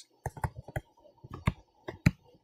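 Stylus pen tip tapping and clicking on a tablet screen while handwriting, about eight light, irregular clicks.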